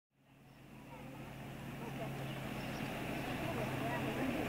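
Outdoor street ambience fading in from silence: a steady low hum like a running engine, with distant voices over it.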